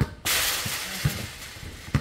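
A sudden clattering crash about a quarter of a second in, fading away over about a second, followed by a basketball bouncing a few times on the hard court.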